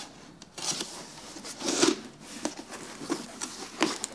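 A cardboard box being opened: a utility knife scraping through packing tape, with the cardboard flaps rubbing as they are pulled open. The sound comes as several separate rasping strokes.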